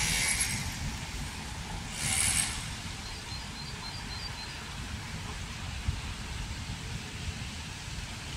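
Distant thunder, a low rumble that slowly fades. Two brief hissing swells come at the start and about two seconds in.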